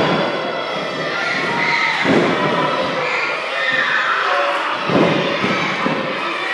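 Two heavy thuds of bodies hitting the wrestling ring's mat, about two seconds in and again about five seconds in. Underneath runs the steady chatter and calls of a small crowd.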